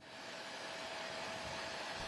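Steady rushing machine noise with a faint steady whine, fading in at the start: the ambient sound of a cargo jet and its ground equipment on an airport apron.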